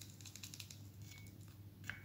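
Faint crinkling and light ticking of a bleach powder sachet being handled and tapped as its powder is poured into a small glass bowl, with a sharper tick near the end.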